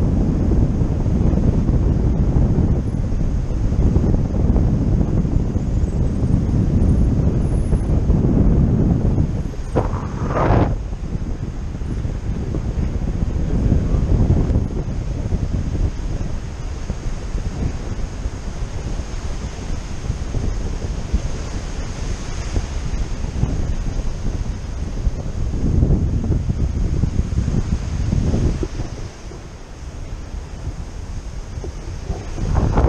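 Wind buffeting the microphone of an action camera on a paraglider in flight: a loud, uneven low rumble that swells and eases in gusts.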